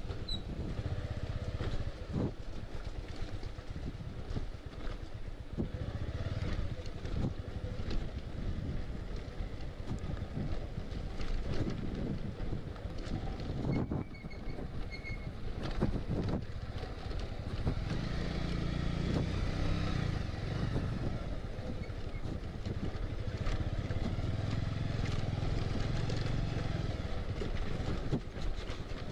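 Motorcycle engine running at low speed over a rough gravel track, with wind noise on the microphone and occasional short knocks; the engine grows louder about two-thirds of the way through.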